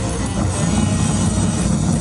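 Live band's heavily distorted amplified guitars in a loud, steady, dense drone with a heavy low rumble.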